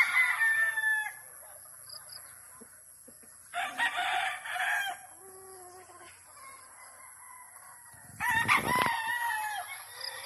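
Cockerels crowing, three crows in turn: one trailing off about a second in, another at about three and a half seconds, and a third near the end.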